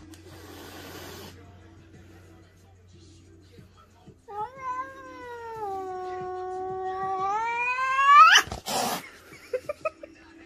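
A cat's long, drawn-out yowl in a face-off with another cat. It begins about four seconds in, holds at a low pitch, then rises steeply and breaks off, followed at once by a short harsh burst of noise.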